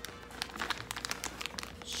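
Crinkling of a clear plastic bag as it is handled: a quick, irregular run of small crackles starting about half a second in.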